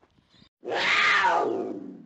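A big cat's roar: one loud, rough call starting about half a second in, falling in pitch and fading over about a second and a half.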